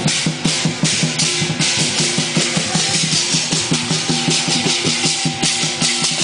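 Lion dance percussion: a Chinese drum beaten in a fast, steady rhythm under constant clashing cymbals.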